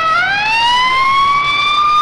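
Ambulance siren wailing, one tone rising smoothly in pitch and levelling off.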